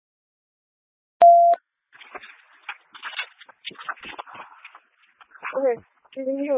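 Police scanner radio: about a second in, a short, steady, loud beep, then about three seconds of broken, garbled transmission that the dispatcher takes for a mic click. A voice comes on near the end.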